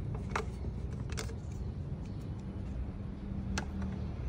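Three sharp plastic clicks as the intake tube is lifted away and a perforated plastic turbo-inlet silencer insert is pulled from the turbo inlet, over a steady low hum.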